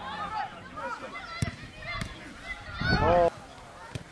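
Players' voices calling out on a football pitch, with one loud, drawn-out shout about three seconds in and two sharp knocks before it.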